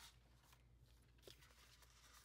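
Near silence: room tone with a faint low hum and a faint tick or two from paper being handled about halfway through.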